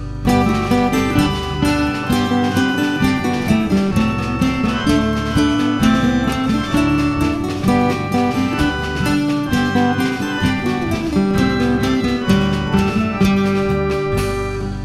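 Instrumental break of a traditional English folk song, led by acoustic guitar playing a busy, rapid plucked accompaniment.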